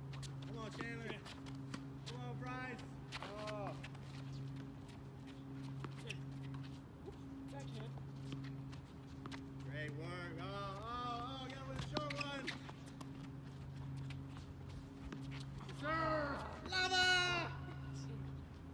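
Tennis balls struck by rackets and bouncing on a hard court during rallies, heard as scattered sharp pops, with players' shouts and calls. The loudest shouting comes near the end. A low hum runs underneath.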